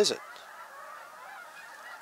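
A man's voice ends a spoken question, followed by a pause of faint, steady background noise outdoors.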